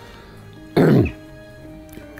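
An elderly man clears his throat once: a short, rough burst about a second in. Quiet background music with steady held tones runs beneath it.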